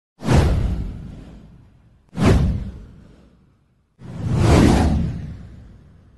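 Three whoosh sound effects from an animated news intro title. The first two hit sharply and fade out over about two seconds each; the third swells up more gradually about four seconds in, then fades.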